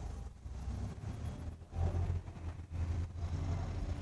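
A vehicle engine running, a low steady rumble that swells louder about two seconds in.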